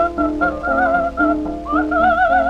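Coloratura soprano singing high held notes with a quick vibrato, sliding up to a new held note near the end, over a lower accompaniment. It is an early acoustic recording from 1906, thin in sound, with a steady low hum beneath.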